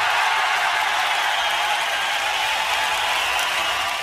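A steady, unpitched noise sound effect that swells in just before and holds level, without any music.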